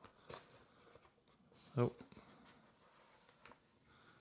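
Thin cardboard phone box being opened by hand, with faint rustles and a few light taps as the lid is worked loose and lifted.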